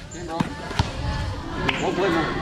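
A few separate thuds of a basketball bouncing on a paved court, about a second apart, over background music and voices.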